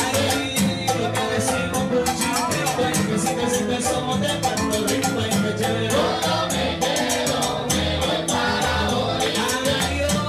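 Live salsa band playing: keyboard, timbales and horns, with hand percussion keeping a dense, even rhythm.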